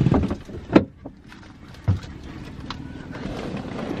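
Two short, sharp knocks about a second apart, over a faint low rumble.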